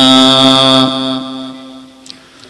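A man chanting Arabic recitation into a microphone, holding the last note of a phrase on one steady pitch; it fades away over about a second and a half.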